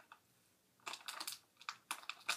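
Faint rustling and crinkling of small packaging being handled and opened by hand, in two brief clusters of clicks, about a second in and again near the end.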